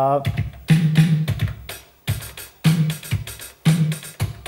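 E-mu Drumulator drum machine playing a sequenced drum beat: repeated sharp drum hits, several of them with a low pitched note sounding under them.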